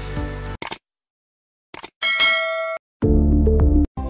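Sound effects of an animated intro graphic: music cuts off, a few short clicks follow, then a bright bell-like ding rings for under a second. A loud low steady tone lasts almost a second near the end.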